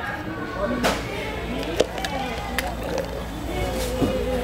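Indistinct background voices of people talking, with a few light knocks.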